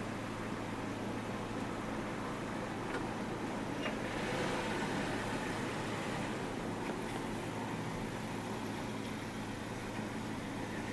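Car engine idling, heard from inside the cabin as a steady low hum with a faint background rush.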